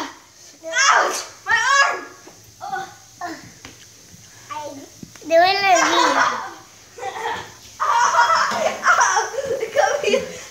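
Children's voices: high-pitched shouts and cries in short bursts, with nothing said clearly.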